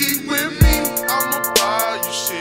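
Hip hop beat: a deep kick drum hit about half a second in and a sharp hit near the end, under quick hi-hats and a wavering melodic line.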